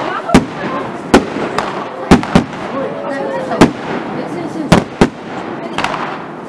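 Fireworks bursting in a rapid irregular series of sharp bangs, about seven in six seconds, with people talking and laughing.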